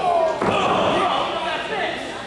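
One hard slam on the wrestling ring about half a second in, as a wrestler is taken down, over shouting voices from the crowd.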